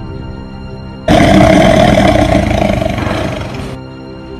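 A loud roaring burst from the dark ride's show effects starts suddenly about a second in, lasts about two and a half seconds and cuts off sharply, over the ride's background music.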